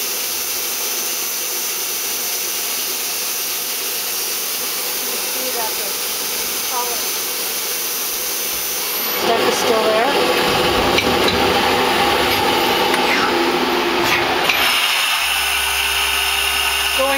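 Nexturn SA-32 CNC Swiss-type lathe running through a program cycle: a steady machine hiss that grows louder and rougher about nine seconds in, with a few clicks. A low hum joins near the end.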